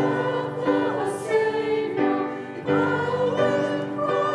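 Church congregation singing a hymn together, many voices holding sustained notes that move from chord to chord every second or so.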